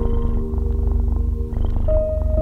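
Slow, calm background music of held keyboard notes over a low, fast-pulsing rumble.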